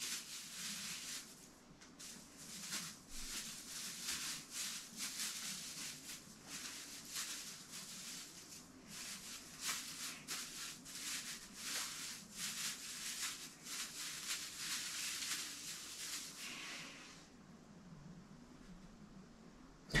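Plastic branches of an artificial Christmas tree rustling as they are bent open and fluffed out, a quick, irregular run of crackly rustles that stops a few seconds before the end.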